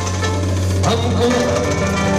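Live Uzbek band music: a doira frame drum and a drum kit beating under keyboard, with one sharper drum stroke about a second in.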